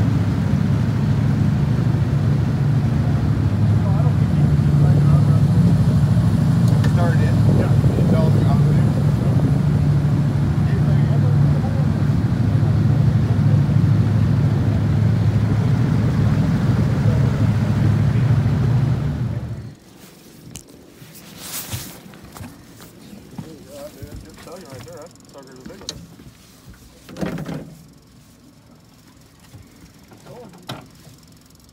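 A boat's motor runs steadily with a low drone as the boat cruises, then shuts off suddenly about two-thirds of the way in. A few scattered knocks follow.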